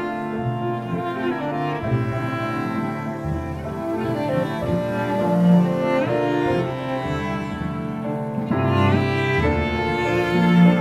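A chamber-jazz ensemble of bowed strings and piano playing, with the bowed cello to the fore over violin and piano. A low line moves from note to note beneath.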